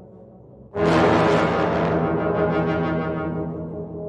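Sampled orchestral brass from the Battalion Kontakt library played from a keyboard. A loud, bright low-brass chord comes in suddenly about three quarters of a second in, then holds and slowly fades, over the dying tail of the note before it.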